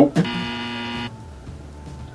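Wrong-answer buzzer sound effect marking an incorrect guess: one steady, buzzy tone lasting about a second, cutting off suddenly.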